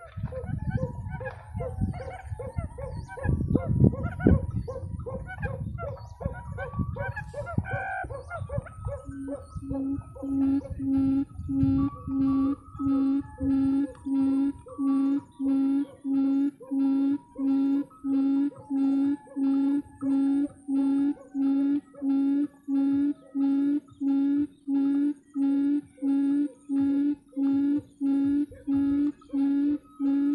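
Low rustling and rumbling with scattered bird calls, then from about nine seconds in a quail calling: a low hooting note repeated evenly, about three hoots every two seconds.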